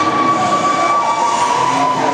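Ice rink horn sounding one long, steady note that stops near the end, over crowd noise in the arena.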